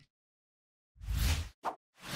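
Animated end-screen sound effects: after a second of silence, a half-second swish with a deep low thud, then a short pop.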